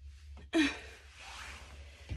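A person lets out a heavy sigh: a sudden breath about half a second in, voiced briefly at the start, that trails off as a breathy exhale over a second or so.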